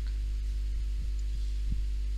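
Steady low electrical hum in the recording, with a few faint soft thumps about a second in.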